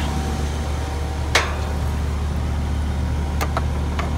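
Steady low machine hum, with one sharp click about a second in and two fainter quick clicks near the end.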